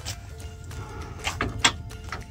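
Soft background music, with a few sharp metallic clicks near the end as a socket wrench is fitted to the brake backing-plate mounting nuts.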